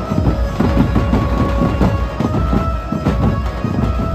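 Dhumal wedding band's large stick-beaten drums played in a fast, dense rhythm, with a steady held tone sounding above the drumming.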